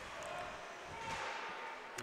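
Faint ice-hockey arena background picked up by the broadcast microphone: a low steady noise with a couple of faint held tones, no sharp impacts.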